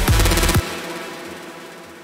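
Big room house drop playing, with layered synth leads over kick drums and a quick run of drum hits. It stops about half a second in, leaving a reverb tail that fades away.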